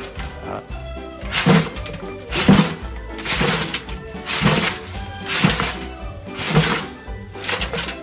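A seafood boil of crawfish, crab legs, corn and potatoes shaken by hand in a large aluminium stockpot. There are seven shakes about a second apart, starting about a second and a half in, each a thud with a wet rustle of shells, over background music.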